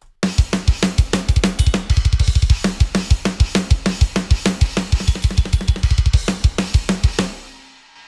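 Sampled drum kit from the Hertz Drums virtual instrument playing a metal groove: rapid double-bass kick runs under regular snare hits and cymbals, the kick sounding really tight. The groove stops about seven seconds in and the cymbals ring out.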